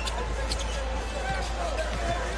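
A basketball dribbled on a hardwood court, a few sharp bounces over the steady noise of a large arena crowd.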